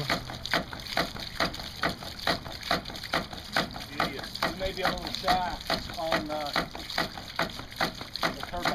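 Homemade PVC hydraulic ram pump cycling steadily: its waste valve clacks shut about two to three times a second, each clack followed by a spurt of water splashing out of the valve. This is the steady rhythm of a ram pump working, each valve slam driving a pulse of water up the delivery pipe.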